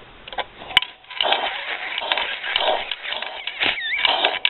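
Breath blown into the intake port of a Piaggio Ciao moped's opened two-stroke crankcase. The rush of air swells and fades repeatedly as the crankshaft's rotary valve opens and closes the port. A sharp click comes just before the blowing starts.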